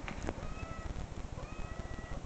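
Cat meows played back from a video of cats meowing: a few drawn-out, fairly level calls, one starting about half a second in and another near the end.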